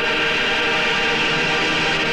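Choral song with instrumental backing holding one long, steady chord.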